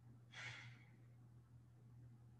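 Near silence over a steady low hum, with one short, soft exhaled breath about half a second in.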